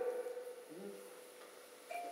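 A short pause in a man's speech: quiet room tone with a faint brief vocal sound about a second in. His voice trails off at the start and comes back at the very end.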